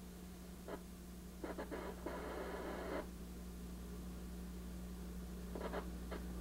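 VHF communications receiver being tuned by hand across the high VHF band. Faint short snatches of signal come through its speaker, with a burst of static about two seconds in, over a steady low hum.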